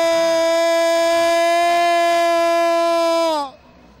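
A man's long, loud held shout on one steady high note, sliding down and cutting off about three and a half seconds in. It is a commentator's celebratory yell, which he later calls his longest in two years.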